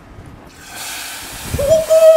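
Hot oil with cumin seeds, garlic and curry leaves poured into a pot of boiling dal, hissing and sizzling loudly as it hits: the chunkay tempering of the dal. About a second and a half in, a person's long held vocal exclamation rises over the sizzle.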